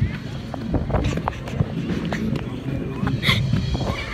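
A handheld phone jostled as its holder runs: irregular handling knocks and rumble, with brief children's voices about three seconds in.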